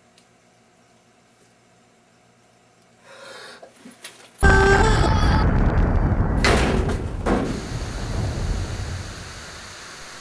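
Near silence for about three seconds, a faint sound, then about four and a half seconds in a sudden loud explosion sound effect that dies away over several seconds into a steady static hiss.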